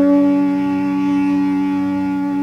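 Bansuri (Indian bamboo flute) holding one long, steady note over a continuous drone, in a raga performance heard from an old tape recording.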